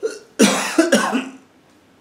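A man coughing: a brief cough, then two loud coughs in quick succession.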